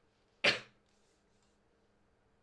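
A man's single short cough, sharp and loud, dying away quickly.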